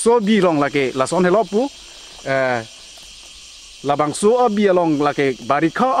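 A man talking in short phrases, over a steady high-pitched buzz of insects.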